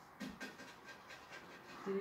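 A man breathing in quick, faint breathy puffs and hisses as hair dye starts to sting his scalp.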